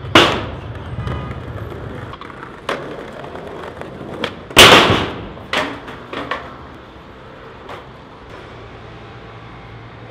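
Skateboard sounds: a sharp clack at the start, then wheels rolling on stone paving. About four and a half seconds in, a loud crash as the rider bails and the board slams down at the metal bank. A few smaller clatters follow as it bounces to rest.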